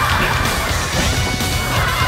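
People scuffling and falling in a heap onto a wooden floor, over background music.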